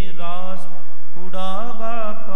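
Sikh kirtan: male voices singing a Gurbani hymn with melodic glides, accompanied by harmonium and tabla.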